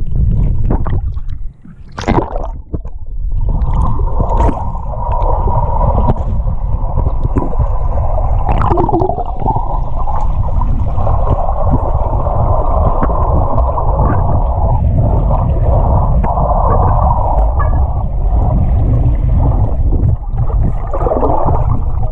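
Loud, muffled rush and gurgle of churned water and bubbles, heard through a camera microphone held underwater in a swimming pool, as a swimmer kicks with short swim fins. The sound drops briefly about a second and a half in, then runs on as a steady rushing noise.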